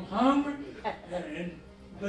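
A man preaching into a microphone, speaking in short phrases.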